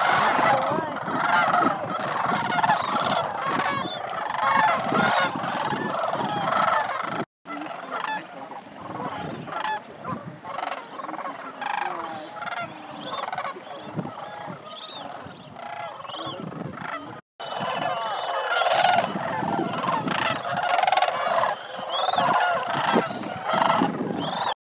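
A large flock of sandhill cranes calling, many overlapping calls at once. The sound cuts out abruptly twice, about seven and seventeen seconds in, and the middle stretch is quieter than the rest.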